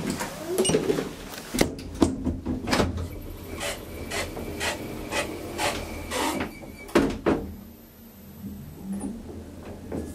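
A modernised Graham Brothers elevator. A button is pressed with a click, then the lift machinery makes a run of clicks and knocks over a steady low hum as the car gets under way. Two louder knocks come about seven seconds in.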